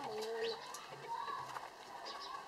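A dove cooing: a held note for about half a second at the start, then shorter notes.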